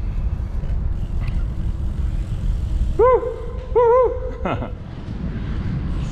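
Bicycle riding on a paved trail through a short stone tunnel, with a steady low rumble of tyres and wind on the microphone. Two short hoots from the rider's voice, each rising and falling in pitch, come about three and four seconds in and hang on briefly in the tunnel's echo.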